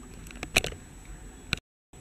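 Low room noise with a few faint clicks about half a second in and again near the end, broken by a moment of dead silence where the video is cut.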